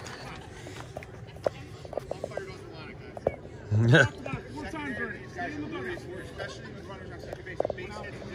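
Faint chatter of several voices in the background, with a man close by saying "yeah" and laughing about four seconds in, and a few short, sharp clicks.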